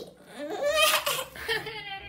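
A man's voice, put on as a child's, sobbing in a few short wavering wails.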